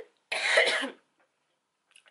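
A woman clearing her throat once, for well under a second, a moment after the start. She is ill and keeps having to cough.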